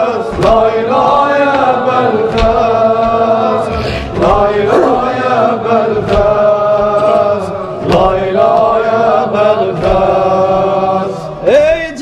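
Group of voices chanting a slow, drawn-out melody of an Azerbaijani mərsiyyə (Shia elegy) without clear words, with a short thud about every two seconds.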